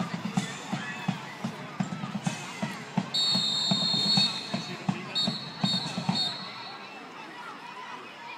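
Marching band drum beat, short low strokes a few per second that fade out near the end, with two long whistle blasts about three and five seconds in.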